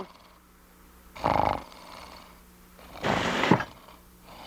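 Cartoon character snoring: two long, noisy snores, about a second and a half apart.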